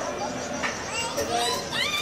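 Children's voices and chatter from children playing, with a child's high-pitched voice rising in pitch several times in the second half.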